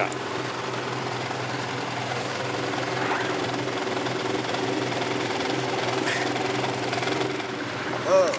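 Vehicle engine idling with a steady low hum that fades out near the end.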